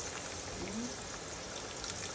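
Braising liquid with wine and garlic simmering in a pot, giving a steady bubbling crackle.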